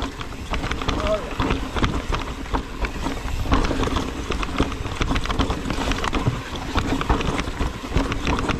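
Mountain bike rattling and clattering down a rocky, rooty trail, tyres and frame jolting over rocks in a steady stream of knocks, with wind rushing on the camera microphone. The brakes are held hard to the bar, their pads described as nearly gone.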